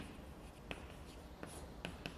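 Chalk writing on a blackboard: a few faint, sharp taps of chalk against the board, three in the second half, over a low room hum.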